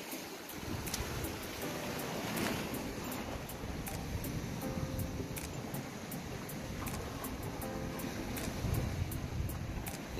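Steady wash of sea surf and wind noise, with faint music in the background.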